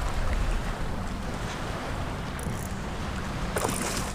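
Wind buffeting the microphone over shallow water lapping around a wading angler, with a brief splash near the end as a hooked snook leaps clear of the surface.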